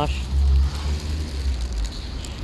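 Uneven low rumble of street background noise, loudest about half a second in, over a faint hiss.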